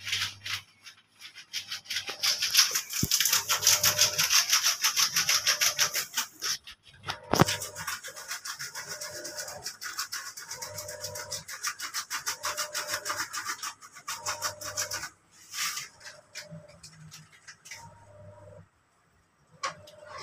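Fast, repeated scratchy rubbing strokes, many to the second, in two long runs broken briefly about seven seconds in; they die away about fifteen seconds in, leaving a few scattered ticks.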